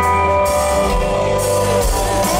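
Live country band playing an instrumental passage: strummed acoustic guitar and drums with cymbal washes under sustained pedal steel guitar notes that slide up and down in pitch.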